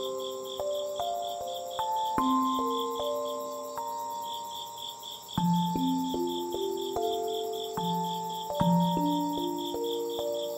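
Slow, gentle background music of single sustained notes stepping through a melody, laid over a steady chorus of crickets: a regular pulsing chirp about four to five times a second and a continuous high trill.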